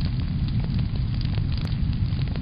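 Fire sound effect: a steady low rumble with many small crackles scattered through it.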